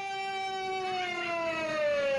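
A long held cry from one voice, steady at first and then sliding down in pitch from about halfway through.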